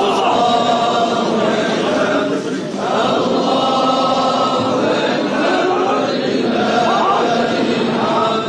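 Many men's voices chanting together in unison, in long drawn-out phrases with a brief break about two and a half seconds in.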